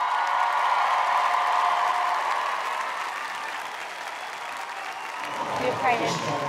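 Studio audience applauding, loudest at the start and slowly dying down.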